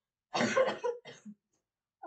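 A woman coughing: one loud cough about a third of a second in, followed by a couple of weaker ones, all within about a second.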